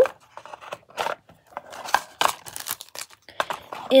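Small items and packaging being handled by hand: a scattered run of light clicks, taps and brief rustles.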